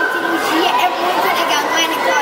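A girl talking into a handheld microphone, with crowd chatter echoing in a large indoor hall behind her.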